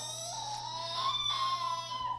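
A baby fussing in one long, drawn-out whining cry, its pitch slowly rising and then holding.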